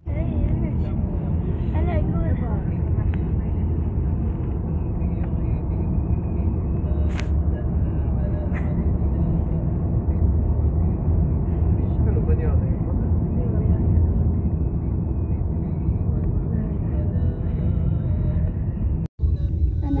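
Steady low rumble of a car's engine and tyres heard from inside the moving cabin, cut off for an instant just before the end.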